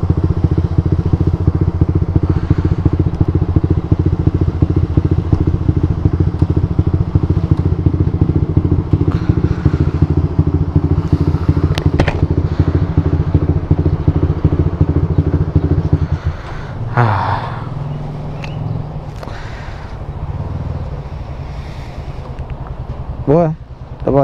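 Motorcycle engine running steadily. About two-thirds of the way through, its note drops lower and quieter, and a brief rising sound follows about a second later.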